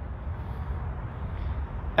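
Volkswagen Touareg R-Line's electric tailgate opening under power, a steady mechanical sound with no knocks or clunks, over a low outdoor rumble.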